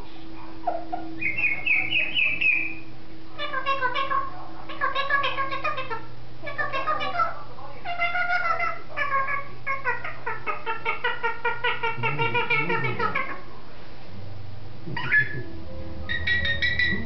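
African grey parrot vocalizing: a brief high chirp early, then a long string of short, pitched calls from about three seconds in to about thirteen seconds, and one more short call near the end.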